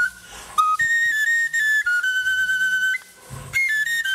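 Soundtrack music: a solo high wind instrument playing a slow melody of held notes that step up and down, with two short pauses.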